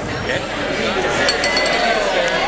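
Crowd chatter in a packed bar, with a quick run of glass clinks a little past halfway.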